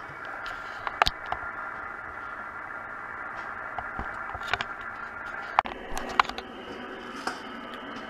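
Amateur radio receiver audio: a steady hiss cut off above the voice range, with several faint steady whistles in it. A few sharp clicks are scattered through it, bunched in the second half.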